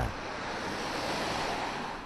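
Outdoor street noise at night: a steady rushing hiss that swells over the first second and a half and then fades.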